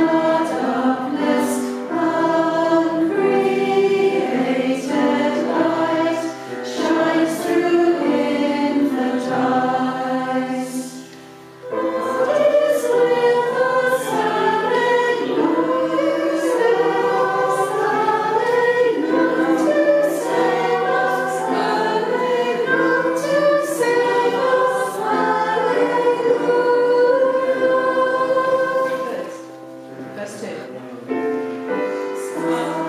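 Mixed-voice choir singing a carol, with a short break between phrases about eleven seconds in before the singing resumes, and the singing dying away near the end.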